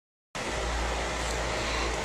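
Steady background noise, an even hiss with a low rumble beneath it, that starts suddenly about a third of a second in after a moment of silence.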